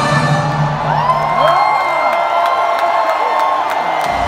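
Music over a stadium's public-address system with a large crowd cheering and whooping. A low held note drops away about two seconds in, while higher held tones and rising and falling whoops carry on.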